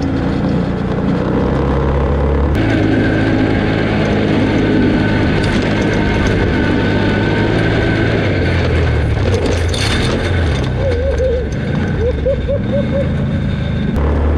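Can-Am Outlander ATV engine running under way on a dirt trail, with its note shifting as the throttle changes and tyre and wind noise underneath. The sound changes abruptly about two and a half seconds in.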